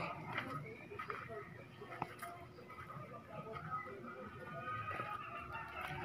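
Faint background voices of people talking, with a few small knocks and a faint steady high tone in the second half.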